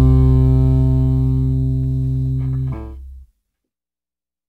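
Last chord of a punk rock song, guitar and bass held and ringing while slowly fading, then cut off abruptly about three seconds in.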